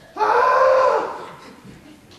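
A man's loud, wordless exasperated cry, held for about a second and then trailing off.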